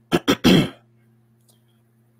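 A man clearing his throat: two quick short bursts followed by a slightly longer one, all within the first second, then a faint steady hum.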